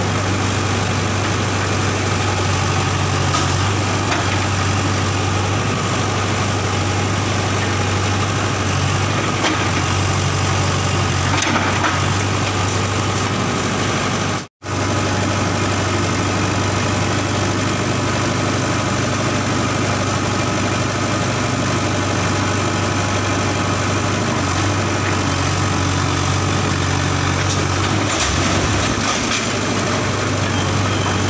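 JCB 3DX backhoe loader's diesel engine running steadily as the machine works at demolishing a building. The sound cuts out for an instant about halfway through.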